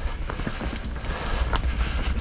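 Hardtail mountain bike rolling fast down a dirt singletrack: tyres on dirt and roots with irregular rattling clicks and knocks from the bike, over a steady low wind rumble on the microphone.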